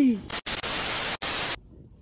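A burst of static hiss lasting a little over a second, with a brief break near its end. It cuts in and out sharply after the last spoken word.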